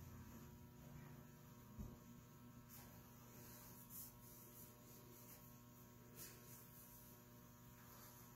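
Near silence: a steady, faint electrical mains hum, with a few faint clicks.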